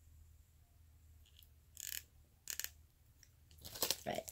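Faint clicks and rustles of a plastic syringe and needle cap being handled: a few short bursts in the second half, the loudest just before the end.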